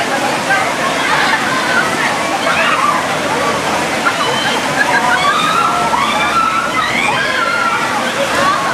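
River water sloshing and splashing around a group of people wading waist-deep, under many overlapping high-pitched voices chattering and calling out together.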